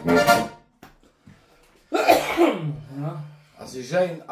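Diatonic button accordion (Lanzinger) sounding the last chord of a passage, which stops about half a second in. After a short pause a man's voice begins talking.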